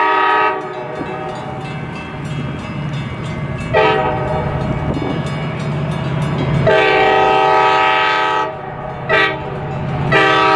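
Metra MP36 diesel locomotive's air horn played in a pattern: a long chord blast that cuts off half a second in, a short toot about four seconds in, a long blast from about seven to eight and a half seconds, another short toot, and a new blast starting at the end. Between the blasts the locomotive's diesel engine is heard running under load as the train departs.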